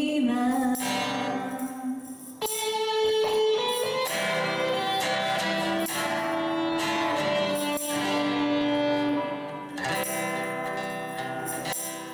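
Live band music: a woman singing a slow ballad melody into a handheld microphone, with two guitars accompanying her, one acoustic-style and one electric.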